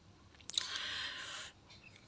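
A spoon scraping wet boiled bathua greens off a steel plate into a steel grinder jar: a sharp click of metal on metal about half a second in, then about a second of wet, squelchy scraping that stops abruptly.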